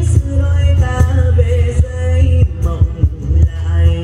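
Live instrumental music with a heavy, throbbing bass line and a steady beat, with an acoustic guitar being played.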